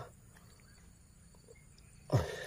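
Near silence: faint outdoor background, with one faint short sound about one and a half seconds in.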